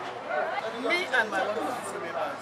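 Speech: a woman talking, with other voices chattering behind her.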